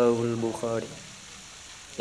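A man's voice finishing a recited Arabic phrase in slow, drawn-out tones for the first second or so, then a pause with only a faint steady hiss.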